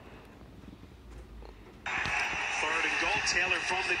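Near quiet for almost two seconds, then an NFL game broadcast suddenly starts playing through a smartphone's small speaker: a commentator talking over a steady hiss of background noise.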